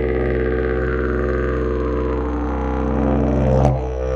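Elm Evoludidg didgeridoo played in the key of C as a steady low drone, its upper overtones drifting slowly as the mouth shapes the sound. Near the end the drone swells, then breaks off sharply for a moment.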